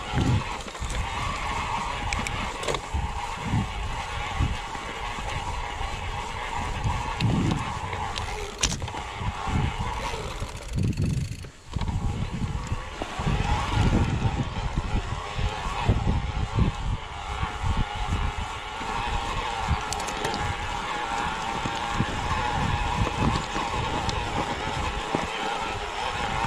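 Electric mountain bike climbing a rough, stony trail: tyres crunching and bumping over rocks with irregular low thumps, under a steady whine from the e-bike's drive motor that fades out briefly about eleven seconds in.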